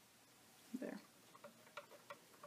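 Near-quiet room, broken about a second in by a brief, soft vocal sound, then a few faint short clicks.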